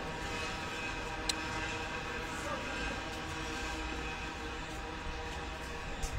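A steady, even hum with faint distant voices, and a single click about a second in.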